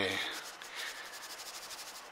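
A faint, rapid scratching that repeats at an even pace and cuts off suddenly at the end, following the last trailing word of a man's voice.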